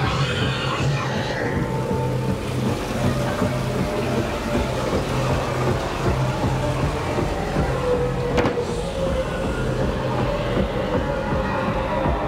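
Droning ambient music from a haunted maze soundtrack, with a steady low hum and a rumbling texture underneath. A high hiss fades out in the first couple of seconds, and a single sharp click comes about eight seconds in.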